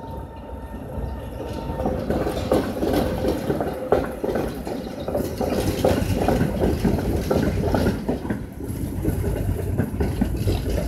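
Tatra T3 trams running through a street-tram junction. The wheels clatter and click over the rail joints and points over a low rumble, growing louder from about two seconds in, with a faint steady whine for a few seconds.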